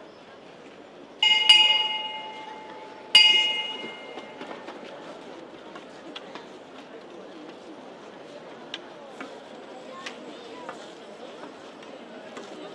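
Processional throne bell struck twice, about two seconds apart, each stroke ringing clearly and fading over about a second. These are signal strokes to the throne's bearers. Crowd murmur with small clicks follows.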